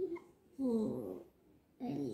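A single drawn-out, cat-like call, rising then falling in pitch, lasting under a second, with shorter voice-like sounds at the start and end.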